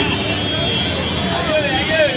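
Busy street traffic heard from a moving electric rickshaw, with people nearby talking in Bhojpuri.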